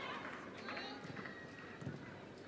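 Faint live sound from a football pitch: players' distant calls and shouts over a low open-air haze, with a soft thump near the end.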